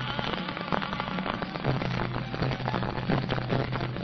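Instrumental break in an old Indian film song's soundtrack: rapid, dense percussion strikes over a low sustained tone, with no singing.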